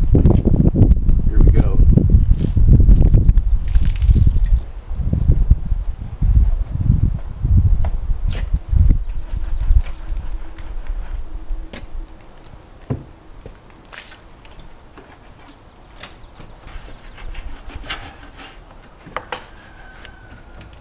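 A detailing brush sloshed and plunged in a bucket of soapy water close to the microphone: loud uneven low rumbling that comes in quick pulses, dying away after about nine seconds. After that, quieter scrubbing of the engine with a few faint clicks.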